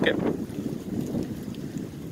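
Wind buffeting the microphone, a low, unpitched rumble.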